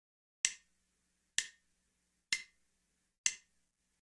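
Count-in for a backing track: four sharp clicks, evenly spaced a little under a second apart at 64 beats per minute, counting off the lead-in before the band comes in.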